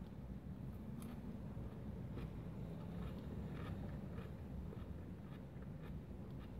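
Quiet chewing of a mouthful of lettuce with sauce, a few faint crunchy clicks spread over the seconds, over a low steady background rumble inside a car.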